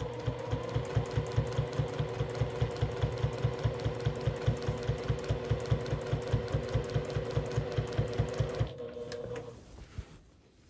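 Electric domestic sewing machine stitching through quilt binding at a steady speed, a fast even run of needle strokes, about five or six a second, over a steady motor hum. It stops near the end.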